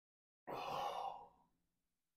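A man's sigh after a swallow of a strong mixed drink: one sharp exhale starting about half a second in and fading away over about a second.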